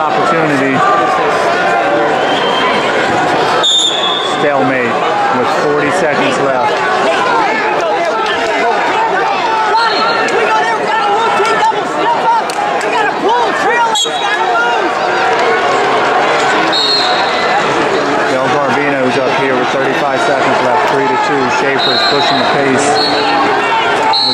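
Wrestling arena crowd, many voices shouting and calling out at once at a steady loud level, with a few short high tones several seconds apart.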